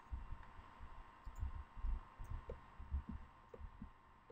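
Faint, irregular low thumps and bumps picked up by the microphone, about a dozen soft knocks over a steady faint high electrical whine.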